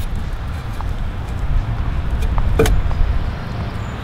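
A few short metallic clicks of a hand tool working on the bolts behind a car's front bumper, over a steady low rumble.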